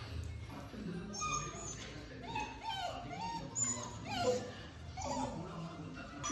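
Husky vocalizing in a string of short, pitched calls that rise and fall.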